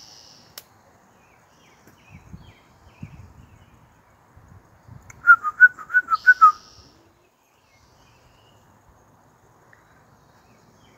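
A quick run of about seven short, loud whistled notes, alternating between two close pitches, a little over five seconds in.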